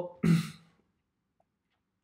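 A man's short, breathy sigh out through the mouth, then near silence.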